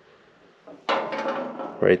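Motorcycle fuel tank being handled and shifted, giving a scraping, clattering handling noise for under a second, starting about a second in.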